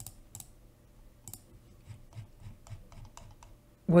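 Light, irregular clicks and taps of a computer being worked, about a dozen scattered over a few seconds, while a PDF document is scrolled to a new page.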